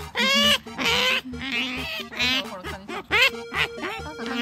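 Asian small-clawed otter giving a string of loud, high squeaking calls that fall in pitch, the loudest near the start and about a second in. Background music with a steady beat plays underneath.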